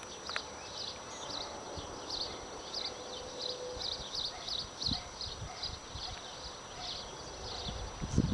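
Short high chirps from a small animal, repeated irregularly about two or three times a second, over faint steady outdoor background sound.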